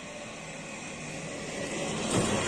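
A passing vehicle approaching, its steady noise slowly growing louder.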